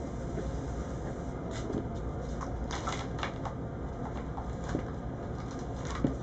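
Kittens scampering on a hard floor: light clicks and scuffs of paws over a steady low room hum, with a single thump at the very end as a kitten leaps at a sisal scratching post.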